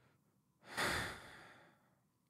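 A man's sigh: one exhaled breath lasting about a second, starting a little over half a second in and fading out.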